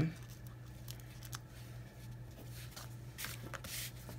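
Cardstock being handled on a tabletop: faint taps, then a soft rustle of paper sliding about three seconds in, over a low steady hum.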